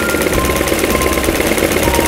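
Mini electric sewing machine running, its needle stitching through thin fabric in a steady, rapid rhythm.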